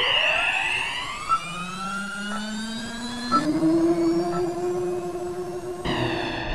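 Electronic sound-effect drone with a jet-like rush: many tones sweep apart over a hiss at the start, then settle into a steady hum that steps up in pitch about halfway through.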